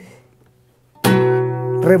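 Nylon-string classical guitar: after a quiet moment, a full chord is strummed about a second in and rings on, the start of a balada rock strumming pattern.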